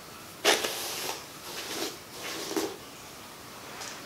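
Hairbrush strokes through a long synthetic yaki wig, about four soft swishes under a second apart, the first the loudest.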